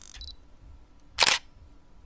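Single-lens reflex camera sound effect: a short high beep, then about a second later one loud, sharp shutter click.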